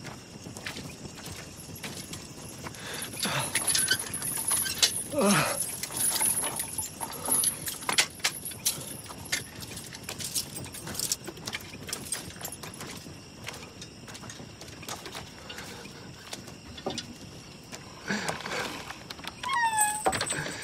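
Scattered knocks and clatter with a few animal calls, one falling steeply in pitch about five seconds in and another rising then falling near the end.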